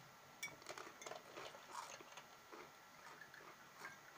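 Faint clinks and taps of a glass liquor bottle and shot glass on a table as liquor is poured into the glass, with most of the small clicks in the first half.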